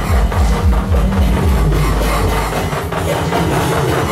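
Live electronic music played on synthesizers and effects units: a fast, pulsing bass line under noisy high textures. The deepest bass drops away about halfway through, leaving a held low tone.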